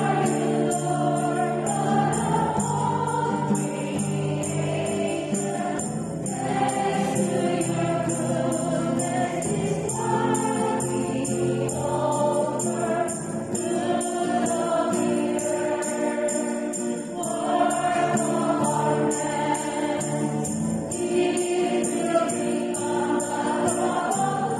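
A church choir singing a hymn, accompanied by a strummed acoustic guitar, with a tambourine jingling steadily on the beat.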